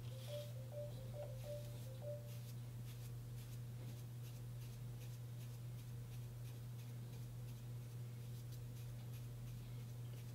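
Soft, repeated scratching of a wide-tooth comb drawn through hair set with waxy oil-based pomade, faint, over a steady low hum.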